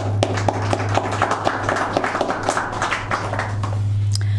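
Audience applauding, a dense patter of many hands clapping that thins out near the end, over a steady low hum.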